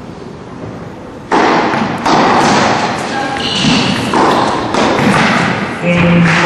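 Tennis ball struck by rackets during a rally, thuds roughly a second apart, over a loud rush of crowd noise that starts about a second in.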